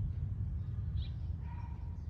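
Outdoor ambience: a steady low rumble with a short bird chirp about a second in and a faint thin call near the end.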